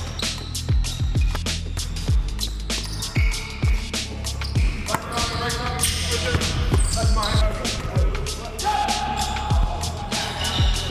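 Basketballs bouncing on a gym floor in a pickup game, with irregular thuds and indistinct players' voices. Background music with a steady bass runs underneath.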